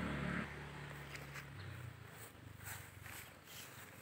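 Quiet footsteps on grass and rustling from the hand-held phone, under a low steady hum that fades out about a second and a half in.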